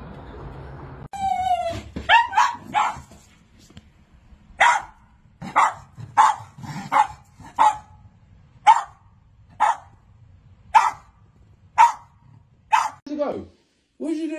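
Schnauzers barking: about ten sharp single barks, roughly one a second.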